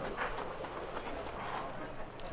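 Faint outdoor background noise with indistinct distant voices, no nearby engines or close speech.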